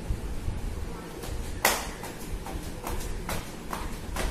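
A child jumping in place in flip-flops on a hard floor: a sharp slap about a second and a half in, then rhythmic slaps about three a second.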